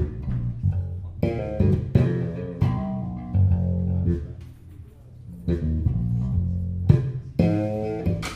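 Live band music led by a plucked electric bass guitar: a run of distinct low notes with higher plucked tones over them and a few sharp accents.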